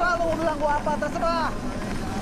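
A high-pitched raised voice calling out in short, bending phrases over a low background rumble.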